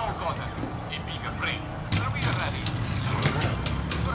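Two metal-wheeled Beyblade spinning tops clashing in a plastic stadium: a quick irregular string of sharp clicks starts about two seconds in, over a steady low hum and faint voices.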